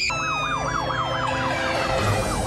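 Police siren in a fast yelp, its pitch sweeping up and dropping back about six times a second.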